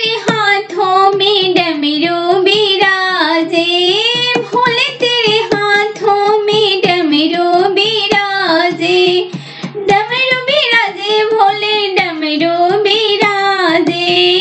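A single high voice singing a Bhojpuri folk song to Shiva, a Shiv vivah geet, in continuous melodic phrases with short breaths between them.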